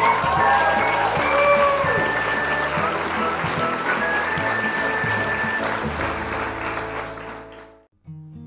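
Intro music mixed with the sound of an audience applauding, fading out near the end.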